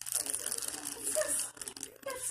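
Paper crinkling and tearing as a dog noses and tugs at scraps in a fleece blanket: a quick, uneven run of small crackles.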